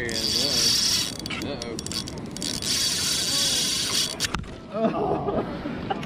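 Spinning fishing reel being cranked to retrieve line, its gears whirring and clicking for about the first second and again from about two and a half to four seconds in.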